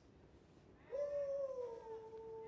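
A man's long, drawn-out howl ("woo!") starts about a second in and is held on one high pitch, sinking slightly as it goes on.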